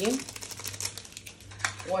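Quick light crinkling and clicking of a seasoning sachet as dried herb flakes are shaken out over a block of dry instant noodles, for about a second and a half.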